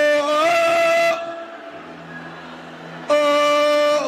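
A man's voice singing out long held "whoa" notes into a microphone. The first swoops up into its pitch and holds for about a second, and a second held note comes in near the end. Soft background music sounds in the gap between them.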